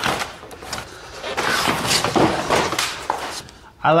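Packaging being cut and pulled away from a boxed e-bike: rustling plastic wrap and foam with scraping against cardboard, coming and going unevenly.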